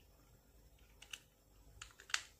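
Near silence with a few faint, light clicks about a second in and near the end: a plastic timer socket and its crimped wire terminals being handled.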